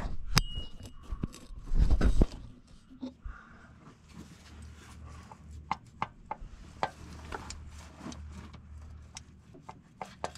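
Hand-tool and parts-handling sounds in a diesel engine bay: scattered small metal clicks and taps, with a heavier thump about two seconds in, over a low steady hum.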